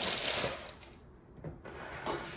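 Plastic bag crinkling as it is handled and put down, followed by a few light knocks near the end.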